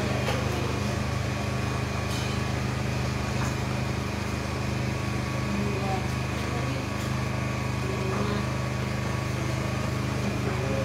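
A steady low mechanical drone, like a small engine running, with faint voices and a few light clicks over it.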